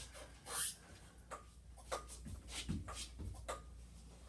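Scattered light knocks and rustles, with a few soft thumps in the second half, from a person moving close to the camera.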